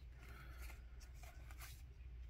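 Faint rustle of glossy trading cards being slid off the top of a stack by hand, over a low steady hum.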